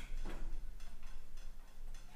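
A few light clicks and ticks as small parts are handled by hand at a mower's fuel tank, over a low steady hum.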